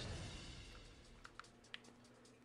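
A few faint, light clicks of a Samsung Galaxy S3 being pressed into a silicone case sleeve, over a low background hum.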